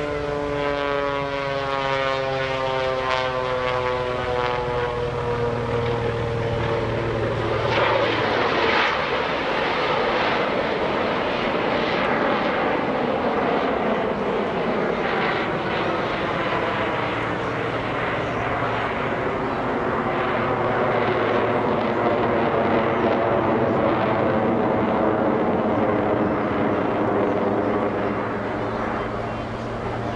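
The Screaming Sasquatch, a Taperwing Waco biplane with a radial piston engine and a jet engine mounted underneath, flying aerobatics overhead. Its engine tone slides steadily down in pitch for the first several seconds, then turns into a fuller, rougher engine sound whose pitch drifts up and down.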